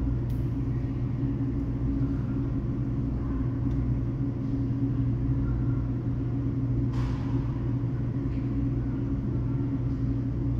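Steady low machine hum, with a brief sharp click about seven seconds in.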